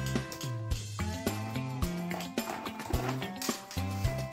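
Background music with a moving bass line and a steady beat.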